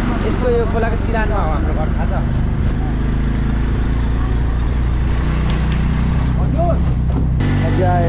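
A motor vehicle's engine running with a steady hum, with voices talking over it; the engine note shifts abruptly near the end.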